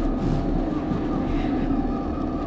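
A steady, even drone with a low hum and a few held tones, unchanged throughout.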